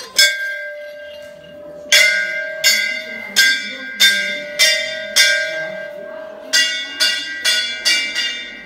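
Large hanging temple bell struck repeatedly by its clapper: about ten ringing strikes, one right at the start, then a run of six at about a stroke and a half per second, a brief pause, and four more. Each strike rings on with the same clear tone.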